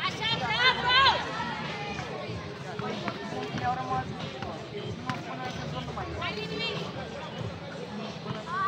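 Voices calling out during a basketball game, loudest in a high-pitched run of shouts in the first second. A few sharp knocks, such as the ball bouncing on the court, sound under the steady background chatter.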